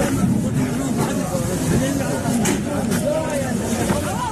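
Several people talking over one another, a hubbub of voices, with a few short knocks and thumps among them.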